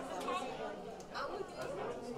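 Indistinct chatter of several people talking at once, overlapping voices with no single clear speaker.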